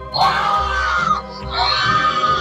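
Two loud high-pitched screams over background music, the first right at the start and falling in pitch, the second beginning about a second and a half in, as a figure pops out of a prank box and people run away.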